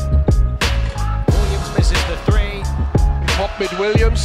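Background hip-hop music with a steady beat and deep bass.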